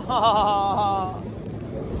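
A woman's drawn-out, wavering wordless groan lasting about a second, then wind buffeting the microphone.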